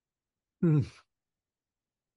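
A man's short wordless vocal sound, under half a second long, a little past half a second in; otherwise dead silence.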